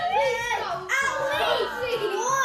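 Children's voices: high-pitched, animated vocalising with no clear words.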